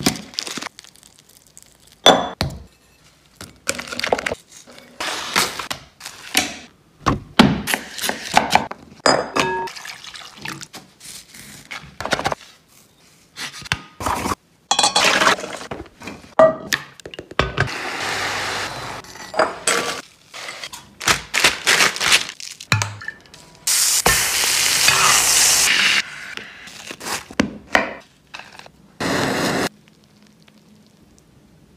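A fast-cut series of kitchen handling sounds during steak cooking: repeated thunks, knocks and clinks of utensils and cookware on a counter, broken by two stretches of steady sizzling from the pan, the louder one near the end.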